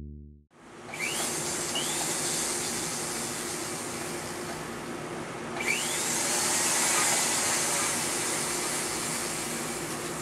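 Flex-shaft motor grinder running steadily, its motor a steady hiss with a faint hum, a little louder and brighter from about halfway through.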